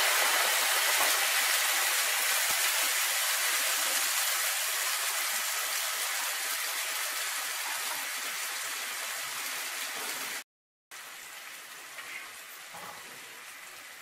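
A watery white mixture sizzling and bubbling hard in hot oil in a frying pan, steadily and slowly dying down as it heats. It cuts out briefly about ten seconds in, then goes on more quietly.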